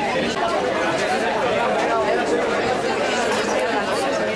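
Crowd chatter: several people talking at once, overlapping voices at a steady level with no single clear speaker.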